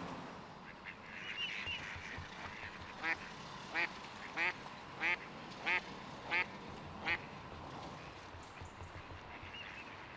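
Mallard duck quacking, seven quacks in an even series about two every three seconds.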